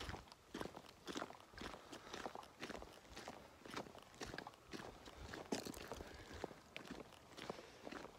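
Faint footsteps of someone walking at a steady pace, about two steps a second.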